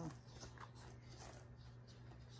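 Faint scratchy rustle of wool being worked on a blending board's carding cloth, a few soft strokes in the first second or so, over a low steady hum.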